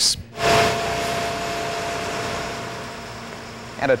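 A newscast transition sound effect: a sudden noisy swell with a faint held tone that fades away slowly over about three seconds.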